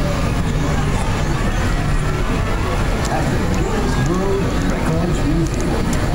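Wheelchair rolling over a bumpy sidewalk: a steady rumble mixed with wind on the microphone, with faint voices in the street.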